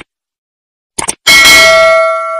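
A couple of quick clicks about a second in, then a bright bell chime that rings on and slowly fades. It is the bell-ding sound effect of an animated subscribe-and-notification-bell button.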